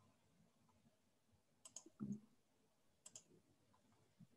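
Near silence with a few faint clicks: a quick double click about one and a half seconds in, a soft low thump just after, and another double click about three seconds in.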